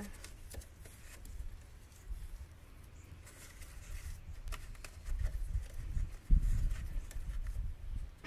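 Handling of a wiring harness and push-on electrical connectors at a hydraulic solenoid valve block: scattered small clicks and rustles over a low rumble, with one louder thump a little past six seconds in.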